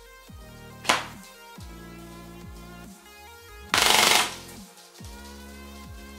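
Electronic background music, with a sharp crack about a second in and a short loud burst of full-auto fire from a G&G TR16 MBR 308SR airsoft electric rifle (AEG) about four seconds in, shot through a chronograph at about 24 rounds a second.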